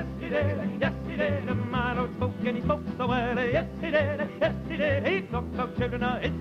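Male folk vocal trio singing a gospel-folk song in close harmony, the voices wavering with vibrato over a bass line that moves through changing low notes.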